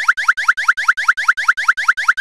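Cartoon sound effect of balls popping up out of a toy's holes: a rapid, even run of short rising pops, about seven a second.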